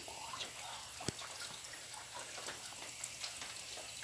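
Light drizzle on banana leaves: a faint, steady hiss with scattered small drips, and one soft tap about a second in.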